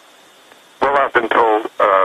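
A short stretch of steady hiss, then from just under a second in a man's voice speaking over a narrow, telephone-like line.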